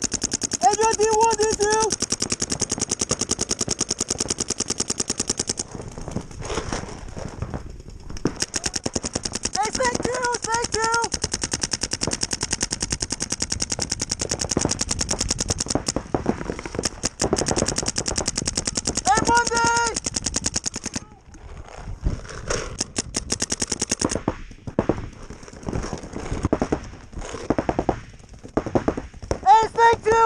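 Planet Eclipse Geo 3 electronic paintball marker firing long, rapid strings of shots, with short lulls about six seconds in and again about twenty-one seconds in.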